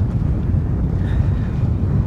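Wind buffeting the microphone: a loud, uneven low rumble throughout, with nothing else clearly standing out.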